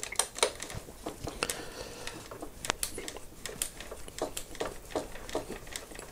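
Irregular small clicks and ticks of a hand screwdriver turning a screw into a plastic wheelie bar mount, the tool tip knocking in the screw head.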